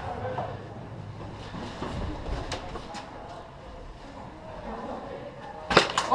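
Rustling and movement noise of a player moving through a large indoor arena, with a low rumble and scattered small clicks. A single sharp, loud crack near the end.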